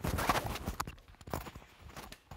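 Handling noise of a clip-on microphone as its pack is being taken off: fabric rubbing over the mic in a dense rustle during the first half second, then a couple of sharp knocks.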